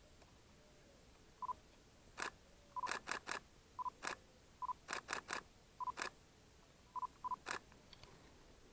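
Nikon DSLR shooting a series of photos: short autofocus-confirmation beeps, each followed by mechanical shutter clicks. The shutter fires sometimes singly and twice in quick runs of three.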